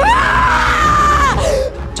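A person screaming: one long, high scream that rises in pitch at the start, holds steady, and breaks off about a second and a half in.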